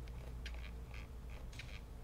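Faint, quick, irregular ticks, about three or four a second, as a colour dial is turned on a smartphone controlling an LED light, over a low steady hum.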